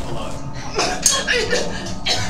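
Background music with a person's voice exclaiming about three-quarters of a second in, and a sharp hit about a second in.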